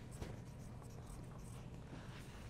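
Faint scratching of pencils on paper as several children write.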